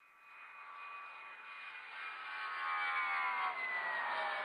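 Intro of a reggaeton track: a jet-like whooshing sound effect that swells steadily louder while thin tones in it slowly slide down in pitch.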